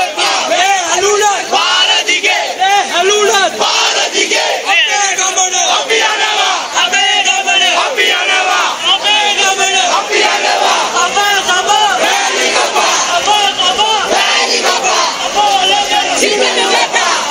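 A large crowd of protesters chanting a shouted slogan in unison, repeated in a steady rhythm.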